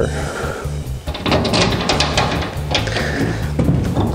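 Background music with a steady beat, and over it a run of clicks and metallic rattles from a stainless-steel T-handle latch on an aluminum truck tool box being worked by hand to unlock one side, from about a second in until near the end.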